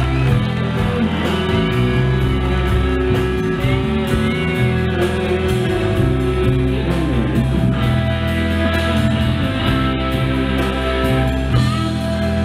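Live rock band playing, with electric guitar to the fore over bass, keyboards and a steady drum beat.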